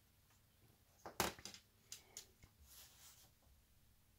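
Light lattice model-bridge girder part being picked up and handled on a worktop: a quick cluster of small clicks and taps about a second in, two more a second later, then faint soft rubbing.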